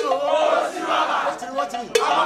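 Crowd of mourners shouting and calling out together, several loud voices overlapping, with a sharp click at the start and another two seconds later.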